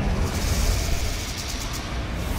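Sound design of a TV news channel's animated bumper: a steady low rumbling whoosh, with faint high glittering ticks in the second half.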